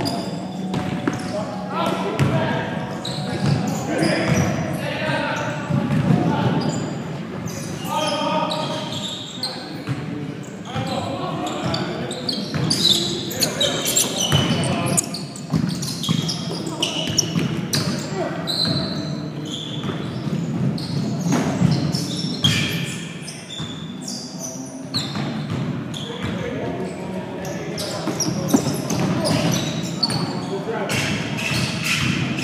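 Basketball bouncing on a hardwood gym floor during play, with indistinct shouts and calls from players, all echoing in a large hall.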